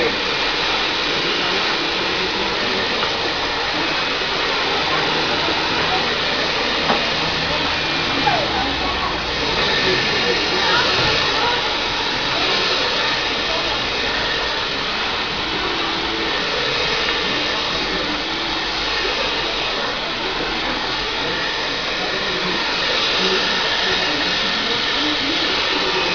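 Hand-held hair dryer running steadily at close range during a blow-dry of long hair.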